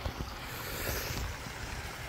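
Backyard pond waterfall running steadily, a soft rushing noise, with wind rumbling on the microphone.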